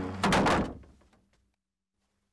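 Heavy wooden double gates slamming shut: one loud thud that rings out and dies away within about a second.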